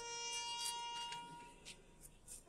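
A faint, steady high-pitched tone with overtones, fading out about halfway through.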